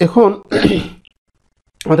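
A man clearing his throat.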